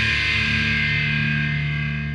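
Black metal: a sustained, distorted electric guitar chord ringing out and slowly dying away, the close of the track.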